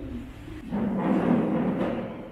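Chairs shifting as several people sit down together at a table: a rumbling shuffle that rises about a second in and trails off.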